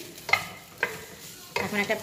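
A spatula stirring vegetables and chicken in a ceramic-coated pot, with a light sizzle and two sharp knocks of the spatula against the pot, the second about half a second after the first.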